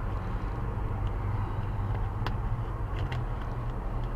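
Car running with a steady low rumble, with a few faint clicks scattered through it.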